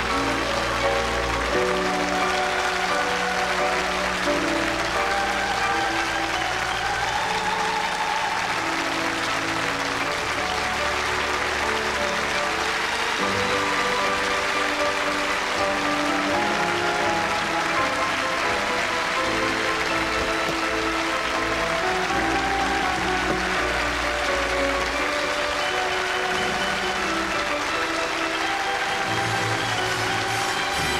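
Audience applauding, with music playing underneath.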